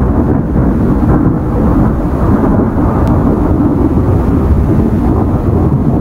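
Loud, steady thunder-like rumble, a sound effect laid under an animated logo intro.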